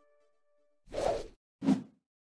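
Two short whoosh sound effects for an animated logo transition, about half a second apart, the second louder and lower. Before them there is a moment of silence.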